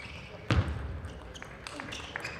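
A dull thud about half a second in, then a few faint, light ticks of a table tennis ball bouncing, in a large hall.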